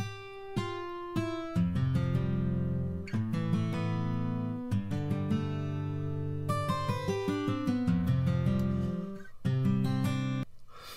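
A dry guitar part played back with no delay or effect on it. It opens with a few picked single notes, then moves into fuller ringing chords from about a second and a half in, with a short break near the end before the notes start again.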